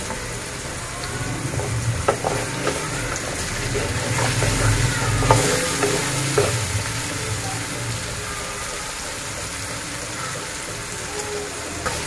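Peas and potato pieces sizzling in oil in an aluminium pot as a wooden spoon stirs them, with a few light knocks of the spoon on the pot. This is the spiced vegetable base of a pulao frying before the water is added.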